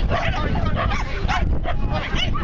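A dog barking several times in quick succession, over a low rumble of wind on the microphone.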